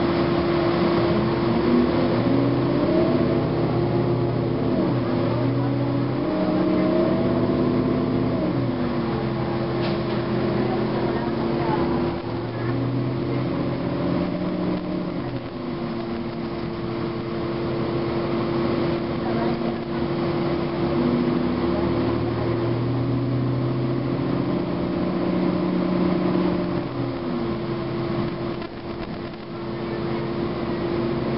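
The Cummins ISM inline-six diesel of a 2009 Gillig Advantage transit bus running under way, heard from inside the passenger cabin. The engine pitch rises and falls in steps as the bus pulls away, shifts and slows. A steady whine carries on underneath throughout.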